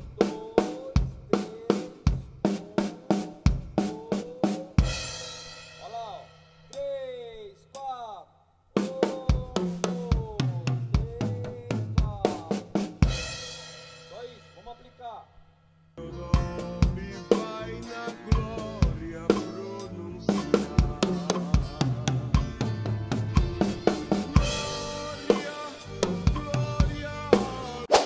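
Acoustic drum kit playing a slow tom fill: alternating right and left hand strokes on the toms broken up by bass drum kicks, ending each time on a kick with a crash cymbal that rings out. It is played twice with short pauses, then the strokes come faster and closer together.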